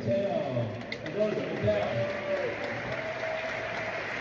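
A man speaking over a hall's sound system, with audience applause as an even hiss underneath.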